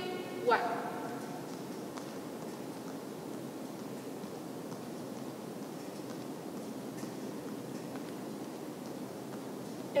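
Soft footfalls of two people jumping in place in sneakers on a hardwood gym floor, over steady background noise from the hall.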